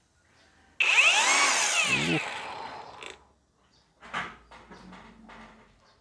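Brushless motor head of a Molar CGT20750 cordless grass trimmer, run with no blade fitted on its 20 V battery. About a second in it starts with a sudden whine as it spins up, then winds down over the next two seconds.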